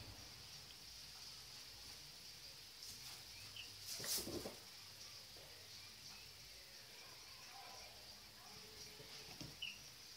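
Quiet room background with a steady high hiss, two faint short bird chirps from outside, and one brief soft knock about four seconds in.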